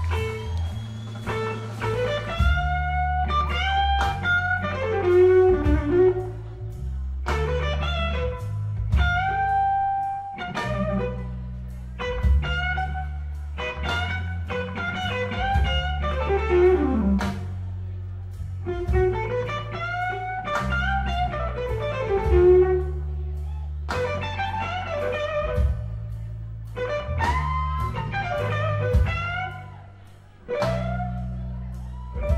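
Live blues electric guitar solo, a single melodic line full of string bends and slides, played over electric bass and a drum kit.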